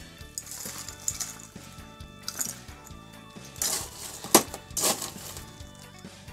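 Crushed ice being scooped with a metal ice scoop and dropped onto a cocktail in a tall glass. A handful of scattered scrapes and clinks; the loudest is about four and a half seconds in.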